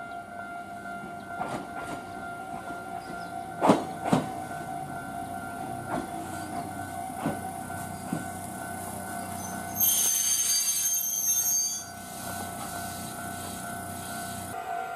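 Electric commuter train pulling into a station and braking, its wheels clicking over rail joints at slowing, widening intervals. A hiss of air comes about ten seconds in as it stops, over a steady high-pitched tone.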